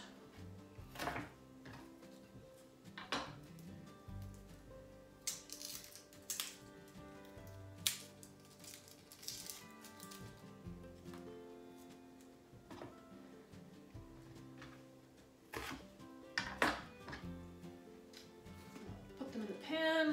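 Soft instrumental background music, with a knife cutting onions on a wooden cutting board: a dozen or so sharp knocks scattered through, the loudest about eight seconds in and again near the end.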